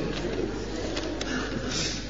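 Paper rustling as handwritten notes are handled, with a few small clicks and a brief louder rustle near the end, over a steady low hum.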